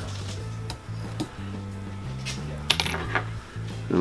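Background music with a low, stepping bass line, over a few light metallic clicks and ticks from a wire whip-finish tool as thread is wrapped and tightened on a tube fly.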